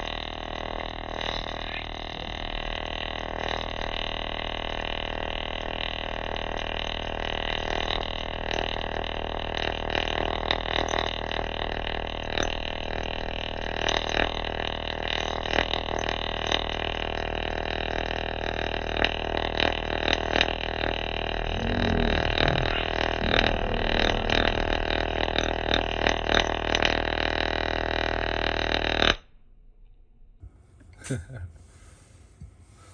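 Electric arc burning between a nail electrode and a magnet in water, giving a steady electrical buzz with irregular crackling that grows busier partway through. It cuts off abruptly about a second before the end as the arc goes out.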